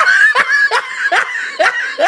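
A person laughing in a run of short, evenly spaced 'ha' bursts, about two or three a second, each rising in pitch.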